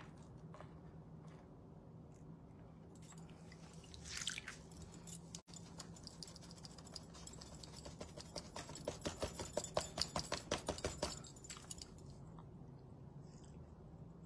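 Thin paper backing sheet of a paint inlay crinkling and scratching under the fingers as it is peeled back and worked off the paint. There is a brief rustle about four seconds in, then a quick run of scratchy strokes, about five a second, for roughly three seconds.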